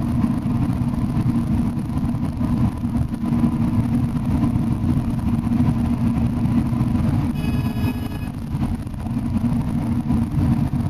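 Cabin noise of a long-distance bus at highway speed: a steady low drone of engine and tyres on the road. About seven seconds in, a brief high-pitched tone sounds for about a second.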